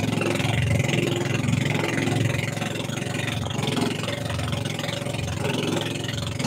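Engine of a motorized outrigger boat running steadily at cruising speed, a constant pulsing hum, with water splashing and rushing past the outrigger float.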